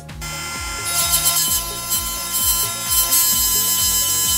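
Cordless 8V rotary tool running at high speed, whining steadily, with a 1500-grit sandpaper disc polishing the jaw of a metal wrench. The sanding hiss joins about a second in. Background music with a steady beat plays under it.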